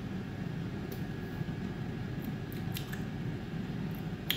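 A man sipping beer from a glass: a few faint, short mouth and swallow clicks over low steady room noise.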